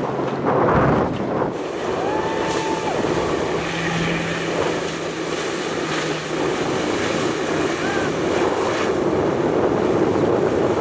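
Jet ski engine running steadily as it drives a flyboard, with rushing water spray and wind buffeting the microphone; the sound surges louder about a second in.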